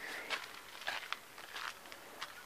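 Faint footsteps on a dirt and gravel yard: a few soft, irregular crunches and rustles.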